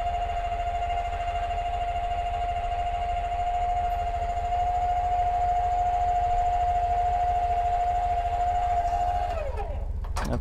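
Electric trailer tongue jack motor running with a steady whine, lowering the travel trailer's nose onto the hitch ball. It gets a little louder about halfway through, then winds down near the end, its pitch falling as it stops.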